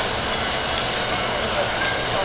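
Steady, even background noise with no distinct event, between pauses in speech.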